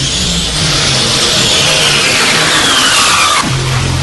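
Electronic dance music in a dubstep style: a hissing noise sweep rises and then falls steadily in pitch over about three seconds, cutting off near the end as a deep bass line comes back in.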